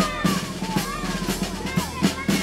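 Background music with a drum-kit beat and short melodic figures.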